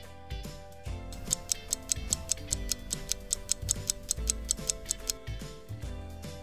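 Clock ticking sound effect, a steady train of sharp ticks at about four a second that starts about a second in, laid over soft background music.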